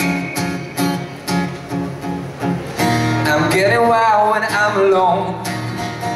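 Acoustic guitar strummed in a steady rhythm, with a singer's voice coming back in about three seconds in, holding and bending long notes over the guitar.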